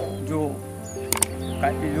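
Background music under a man's voice talking, with a couple of quick sharp clicks a little past a second in, the click sound effect of an on-screen subscribe-button animation.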